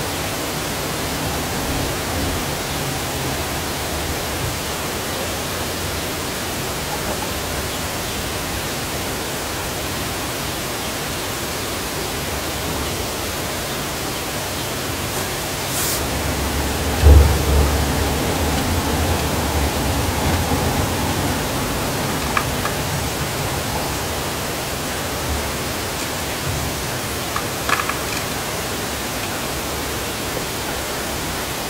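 Steady hiss, with a low rumble and a single loud thump about halfway through, and a few faint clicks.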